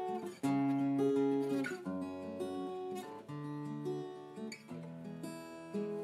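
Acoustic guitar playing a slow chord progression, each chord left to ring before the next, with a change about every second.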